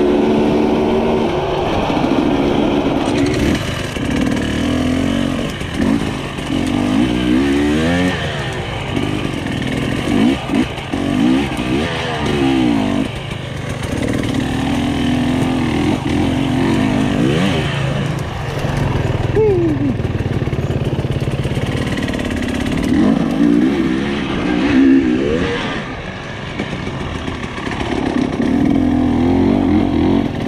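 Husqvarna TE300i two-stroke single-cylinder dirt bike engine being ridden off-road. Its pitch rises and falls again and again as the throttle is opened and closed.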